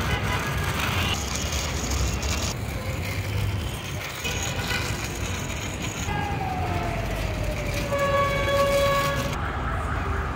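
Small toy vehicle's wheels rolling and scraping along a brick wall as it is pushed by hand, over steady outdoor noise. A tone slides down in pitch in the second half.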